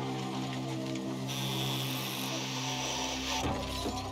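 A low sustained music drone runs under a power tool cutting into car metal, heard as a harsh hiss from about a second in until shortly before the end.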